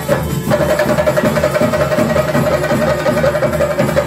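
Live Theyyam percussion: chenda drums beaten in a fast, unbroken rhythm. A steady ringing tone sits above the drums, coming in about half a second in.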